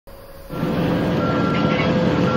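Steady mechanical running noise of a vehicle engine, starting about half a second in, with a constant whine and a higher tone that comes and goes.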